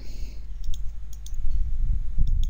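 Computer mouse clicking: a few sharp clicks a little under a second in and again just after a second, over a steady low rumble.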